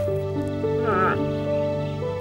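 Background music of sustained notes, with a short wavering cry about a second in from a brown bear cub calling.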